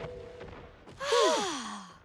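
Cartoon children letting out a sigh of relief together about a second in, several voices gliding downward in pitch and trailing off. Before it, held music tones fade out.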